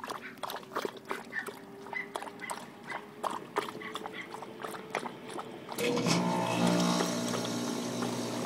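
Springer spaniel lapping water from a plastic tub: a quick run of wet slurping laps, about three a second. About six seconds in, a louder steady droning sound joins in and carries on.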